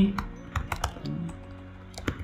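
Typing on a computer keyboard: about half a dozen separate keystrokes clicking in quick succession as a short phrase is typed.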